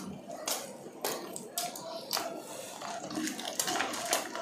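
Close-miked chewing of fried chicken: a string of short, wet, crackly mouth sounds, a few each second.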